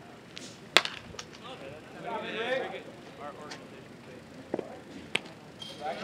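A pitched baseball lands at home plate with one sharp, loud smack just under a second in, followed by a few fainter clicks. Voices call out a second or so later.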